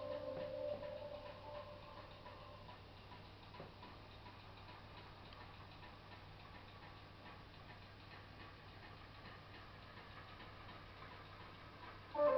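A held musical tone fades out over the first couple of seconds, leaving near silence: a faint steady low hum with faint ticking.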